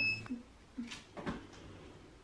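A hoverboard (self-balancing scooter) gives one short high beep, followed by a few light taps and soft knocks as it is ridden on a wooden floor.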